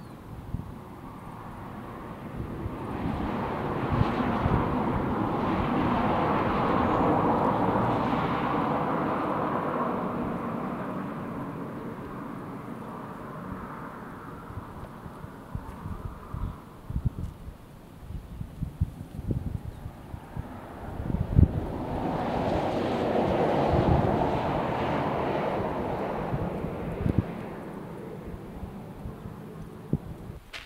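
A rushing noise swells and fades twice, once from a few seconds in to about twelve seconds and again a little after twenty seconds. Between them come scattered scuffs and knocks of climbing shoes and hands against granite rock.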